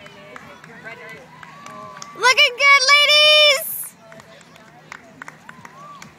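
A woman's loud, high-pitched cheering shout, held at one pitch for about a second and a half, starting about two seconds in, over faint background chatter.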